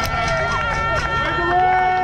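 Spectators cheering: several voices holding long, overlapping shouts of 'woo', with a few claps.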